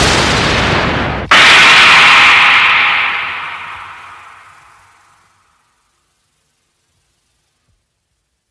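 Anime battle blast sound effects. A loud rumbling blast cuts off about a second in. A sudden loud rushing burst follows and fades away over about four seconds.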